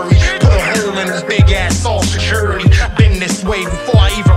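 Hip hop remix beat with a rapped verse over it: regular kick drums and a long held bass note about a second and a half in.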